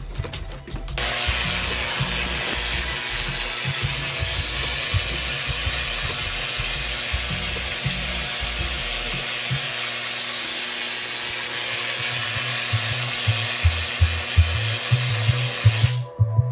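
Spark discharge from a Tesla-coil-type high-frequency power supply for an x-ray tube, arcing between brass-ball spark terminals. A loud, steady hiss of sparks starts abruptly about a second in and holds at an even level.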